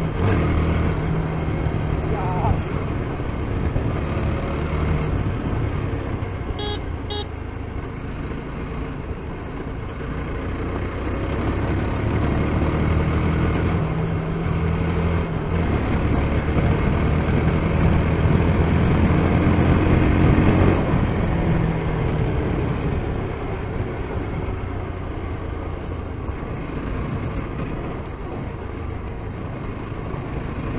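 Yezdi Scrambler's 334 cc single-cylinder engine running as the motorcycle rides along, with wind and road noise; the engine note swells to its loudest about twenty seconds in, then eases back. Two short high beeps sound about seven seconds in.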